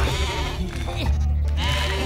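Cartoon sheep bleating, several short voiced calls, over background music with a steady low drone.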